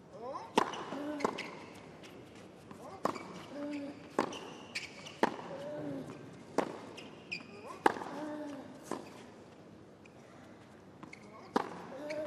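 Tennis rally on a hard court: a racket strikes the ball about every second or so in a long exchange of sharp pops, with a player's short grunt on several of the shots.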